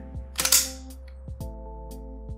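Smith & Wesson M&P 2.0 Compact pistol's slide racked by hand to reset the striker for dry firing: a sharp metallic clack with a brief sliding rasp about half a second in, then a lighter click about a second later. Background music plays throughout.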